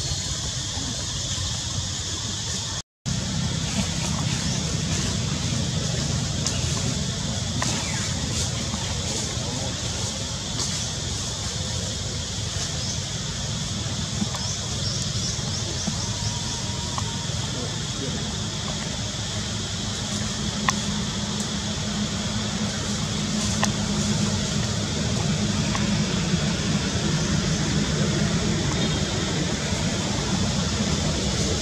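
Steady outdoor background noise: a continuous low rumble with a hiss above it and a few faint clicks, broken by a brief dropout to silence about three seconds in.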